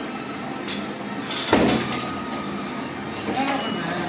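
A loaded barbell with iron plates is cleaned from the floor to the shoulders, with a sharp metallic clank about a second and a half in as the bar is pulled up and caught, over a steady background noise.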